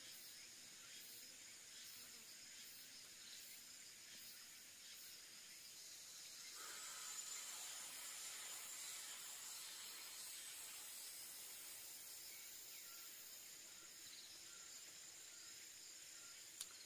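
Near silence with a faint steady hiss of insects. About six and a half seconds in, a soft, slow exhale through pursed lips lasts several seconds, part of a deep-breathing exercise.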